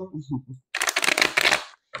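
A deck of oracle cards being shuffled, a quick riffle of about a second starting near the middle.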